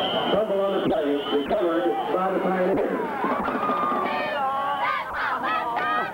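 Football game crowd noise. As a play ends in a pileup, a referee's whistle blows briefly at the start, followed by a run of honking, horn-like notes and crowd shouting, which grows in the second half.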